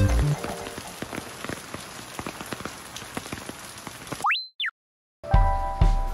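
Steady rain falling, with scattered drops ticking, after background music fades out. Near the end comes a brief whistle that rises and falls, a moment of dead silence, and then background music with a beat starts.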